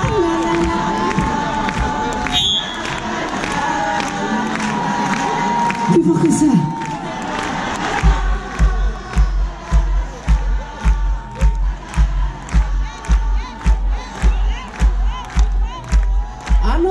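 Concert audience cheering and shouting. About halfway through, a kick drum starts a steady beat of about two strokes a second under the crowd.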